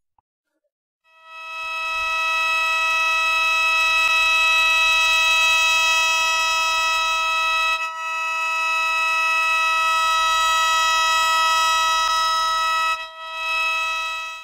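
Shō, the Japanese free-reed bamboo mouth organ, sounding a sustained chord of several high tones. It swells in about a second in and holds steady, with short breaks about eight seconds in and near the end.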